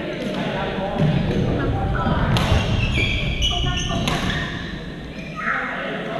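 Reverberant indoor badminton hall: background chatter of players across several courts, sharp racket hits on the shuttlecock (the clearest about two and a half and four seconds in), and a few short high squeaks.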